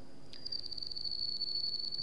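A high-pitched steady trill, pulsing rapidly at an even rate, that starts about half a second in, over a faint low hum.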